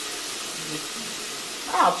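Chopped garlic and onion sizzling steadily in oil in a pot.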